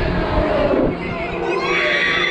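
Riders on a swinging pirate-ship ride cheering and shouting, with high children's voices rising near the end, over wind buffeting the microphone as the ship swings.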